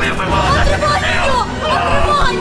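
Two people's voices crying out and talking over each other in a confused jumble, over a steady low rumble.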